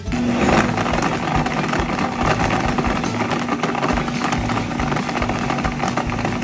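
Countertop blender switching on and running at a steady speed, its motor humming and the blades whirring as they blend a fruit shake.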